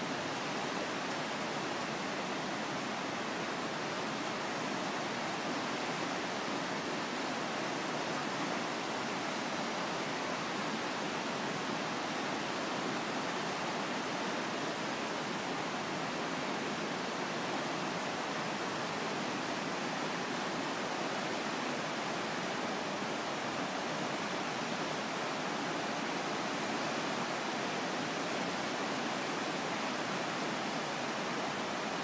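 Rushing whitewater of the Niagara River rapids below the gorge trail, a steady, unbroken wash of water noise.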